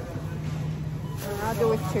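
Steady low hum of a supermarket's room tone, the kind made by refrigerated produce cases and ventilation, with a woman's voice starting to speak just before the end.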